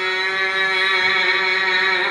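A man's voice chanting in a devotional style, holding one long note at a steady pitch.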